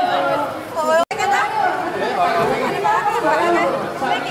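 Several people talking at once, indistinct chatter. The sound cuts out completely for an instant about a second in.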